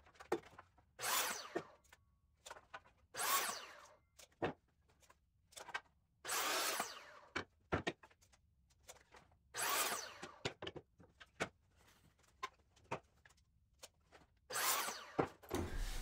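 A miter saw making five short cuts through pine boards, each a burst of blade noise under a second long. Light knocks of the wood being moved and set against the fence come between the cuts.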